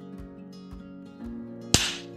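Acoustic guitar music with a steady beat. Near the end, a single sharp clap of a film clapperboard snapping shut is the loudest sound.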